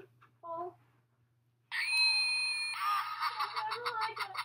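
A shrill scream about two seconds in, held for about a second, then breaking into a rapid pulsing run of cries, about six a second.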